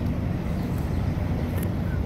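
Steady downtown street traffic: a low, even rumble of cars moving through a city intersection.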